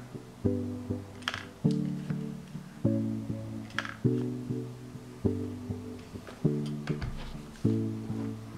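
Background music: a plucked guitar playing chords a little more than once a second, each struck sharply and left to ring and fade.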